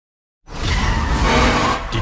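Trailer sound design: after half a second of silence, a loud rushing roar with a deep rumble cuts in suddenly and holds.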